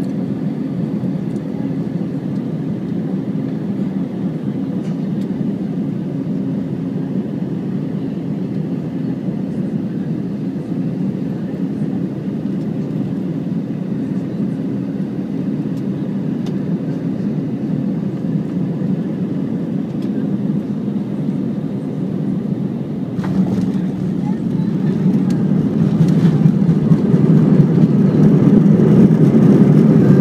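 Airliner cabin noise on final approach: a steady drone of engines and airflow. About three-quarters of the way through comes a sudden jolt as the wheels touch down. After it the noise grows steadily louder through the landing roll, as reverse thrust is applied.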